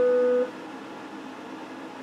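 A single electric guitar note rings on from the last chord and is cut off about half a second in, leaving only a faint steady hiss.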